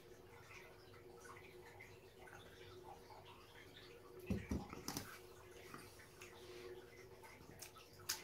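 Near-quiet room with a faint steady hum, a soft low thump about four seconds in and a few faint clicks just after.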